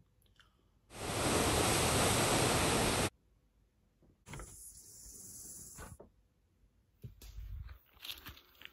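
A person blowing out a candle: one long breath of about two seconds, heard as a rush of air on the microphone. A softer rush of air follows about a second later.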